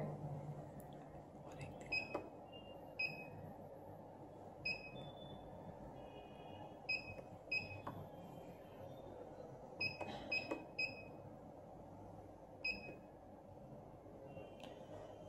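Key-press beeps from a Balaji BBP billing machine's keypad: about a dozen short, high beeps at irregular intervals as figures are keyed in, some in quick runs of three or four.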